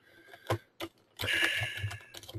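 Computer keyboard keystrokes: two single key clicks, then a quicker run of typing over the last second, with a faint hissing whine behind it.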